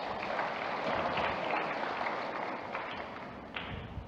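Audience applauding, a steady patter of many hands clapping that thins out and fades near the end.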